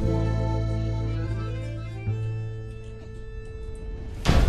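Instrumental background music: held chords over a low bass note, growing quieter after about two seconds.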